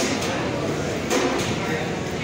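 Busy restaurant hubbub: many voices talking at once in a hard-walled room, with a couple of short clatters about a second in.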